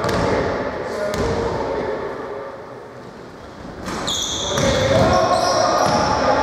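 Indoor basketball game sounds in an echoing gym: a ball bouncing on the hardwood court and players' voices. From about four seconds in, sneakers squeak on the floor and the voices pick up.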